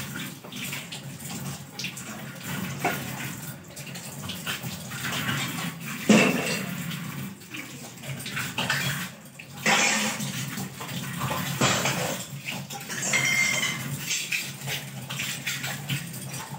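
Tap water running into a kitchen sink while steel utensils are washed, with irregular clinks and knocks of metal dishes, one sharp knock about six seconds in. The water gets louder from about ten seconds in.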